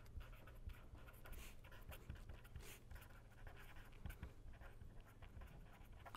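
Pen writing on paper, a faint run of short scratching strokes as words are written, over a steady low hum.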